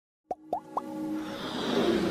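Animated logo-intro sound effects: three quick rising plops in the first second, then a swell that grows steadily louder as the intro music builds.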